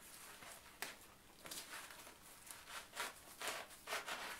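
Leather-gloved hand swiping repeatedly down a fresh nettle stalk to strip off the stinging hairs: a series of short rustling, rubbing strokes of glove on stalk and leaves, with a sharp click just under a second in.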